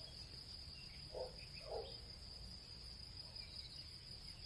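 Faint, steady chirring of crickets, with two brief faint lower sounds a little over a second in.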